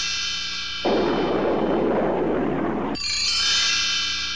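Cartoon soundtrack: a held musical chord, broken about a second in by a rushing whoosh of a flight sound effect lasting about two seconds, after which the chord returns.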